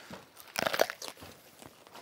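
A person biting into a whole raw cucumber: a crisp crunch of several quick cracks about half a second in, then quieter chewing crunches.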